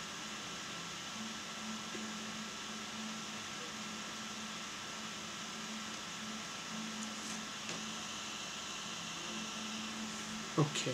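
Steady hiss of background noise, with a faint low hum that fades in and out.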